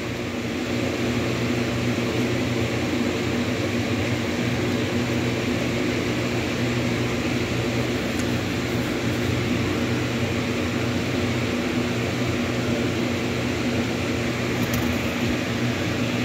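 Steady mechanical hum with a low buzz and an even hiss over it, like a running motor.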